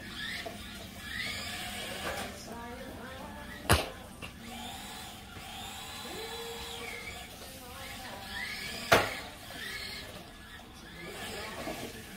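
High, sliding voice sounds, like a child's play noises, with two sharp knocks, about four and nine seconds in.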